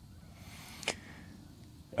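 A quiet pause with faint, steady background noise and a single brief click about halfway through.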